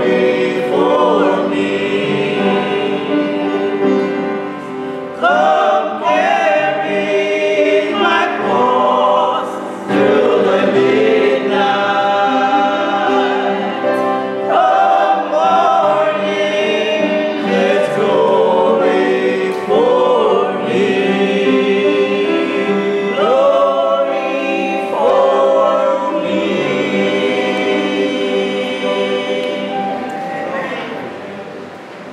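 A small vocal group of three women and a man singing together in phrases, with held notes and brief breaths between lines.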